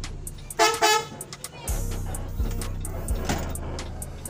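Two short toots of the bus's horn, close together, about half a second in. Under them the bus engine runs steadily, with music with a steady beat playing in the cabin.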